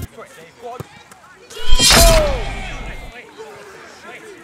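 Edited 'goal' sound effect: a sudden loud impact with a deep boom and a falling tone about a second and a half in, fading away over the next second or so.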